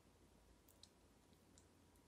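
Near silence: room tone with a few faint ticks of fingertips tapping a tablet's touchscreen.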